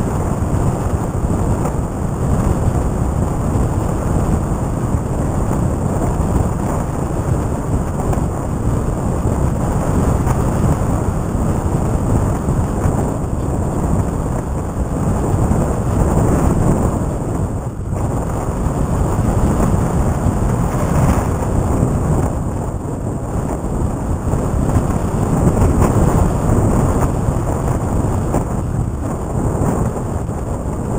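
Wind rushing over the microphone of a camera riding on a flying model plane: a loud, steady, gusty rumble.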